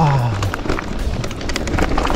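Mountain bike rolling fast down a rocky dirt trail: tyres crunching over loose stones, with many small knocks and rattles from the bike over the rough ground.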